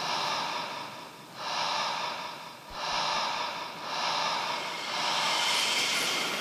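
Rhythmic swells of heavy, breathy noise, about five in six seconds, each rising and fading like a deep breath, in an electronic film soundtrack.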